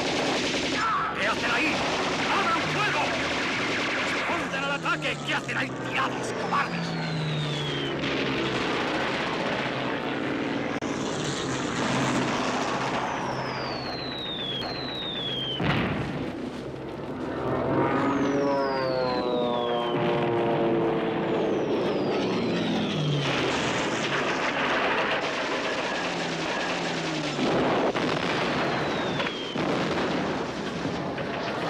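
Battle sound effects: a steady din of gunfire and engines, with about six high whistles falling in pitch as projectiles come in. There is one sharp, heavy impact about sixteen seconds in, and a deep pitched drone that falls steeply a couple of seconds later.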